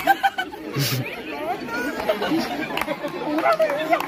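Excited chatter of a group of men, several voices talking and calling out over one another.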